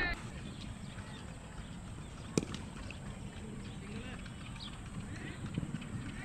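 Open-air ambience: a steady low rumble, with one sharp crack a little over two seconds in.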